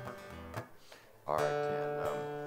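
Acoustic guitar: a faint note plucked, a short quiet, then a full chord strummed past the halfway point and left ringing.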